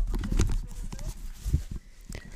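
A few soft low thumps, about half a second and a second and a half in, with a faint voice underneath.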